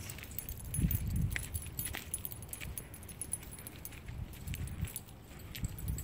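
Light metallic jingling with soft irregular thumps of footsteps while walking.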